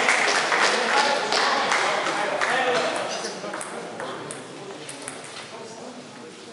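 Table tennis ball clicking off the bats and table in a rally, with voices in the hall. The clicks thin out to a few scattered ones about three seconds in, as the point ends.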